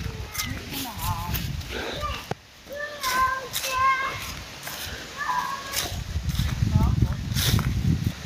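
A young child crying in short, wavering wails after walking into a sign; the cries stop about six seconds in. A low rumble follows near the end.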